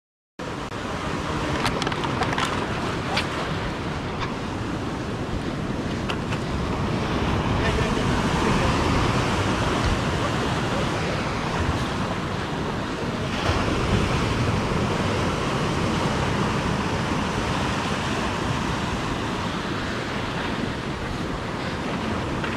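Sea surf surging and breaking against a rocky shoreline, a steady heavy wash of water, with wind buffeting the microphone. The sound cuts in abruptly after a split-second of silence at the start.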